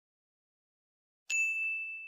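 Silence, then a little over a second in a single bright ding sound effect that rings on at one steady high pitch: the cue that the quiz answer is being revealed.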